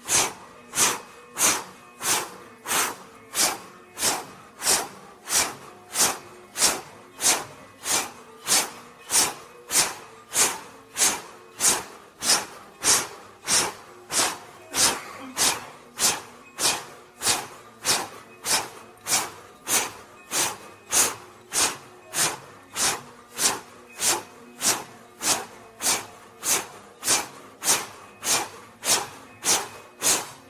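Forceful rhythmic 'fu' exhalations blown out through the lips, about three every two seconds, as a breathing exercise.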